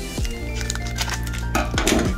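Background music, over the crinkling and tearing of a foil trading-card booster pack wrapper being pulled open by hand, the crackling strongest near the end.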